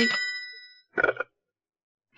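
A telephone's bell ringing out and fading away over most of a second, with a short separate sound about a second in.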